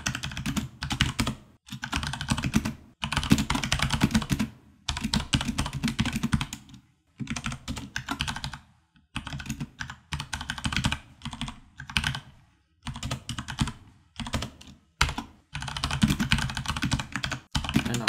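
Computer keyboard typing: quick runs of keystrokes broken by short pauses.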